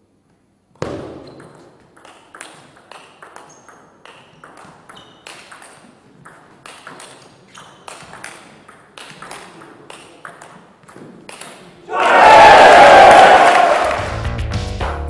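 Table tennis rally: a celluloid ball clicking off the players' rubber-faced bats and the table several times a second, with echo from the hall. About twelve seconds in, a loud shout cuts in, far louder than the ball.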